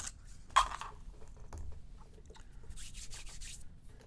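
Handling noise from a styrofoam ball and cone held in the hands, rubbing against each other: a short sharp scrape about half a second in, then a soft rubbing hiss near three seconds.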